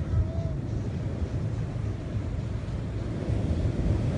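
Steady low rumble of wind and surf, with wind buffeting the microphone.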